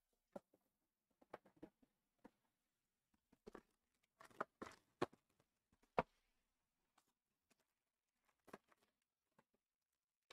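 Near silence broken by faint, scattered clicks and taps of a cardboard trading-card box and packs being handled, with a louder cluster about four to six seconds in.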